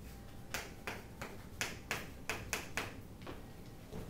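Chalk drawing quick short strokes on a chalkboard: a run of about nine sharp taps and scrapes in under three seconds, stopping shortly before the end.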